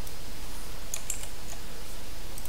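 A few faint computer clicks, bunched around a second in, over a steady hiss and low hum.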